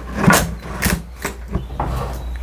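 Plastic five-gallon bucket knocking and scraping as it is set down into its wooden platform: two sharp knocks within the first second, then lighter clatter.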